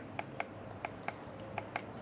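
Button on a Fanttik X8 Apex cordless tire inflator being pressed repeatedly while setting the target pressure, giving about seven short, light clicks at uneven spacing. The compressor is not yet running.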